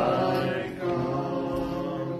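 Voices singing a hymn in slow, long-held notes, the melody stepping down to a lower note about two-thirds of a second in.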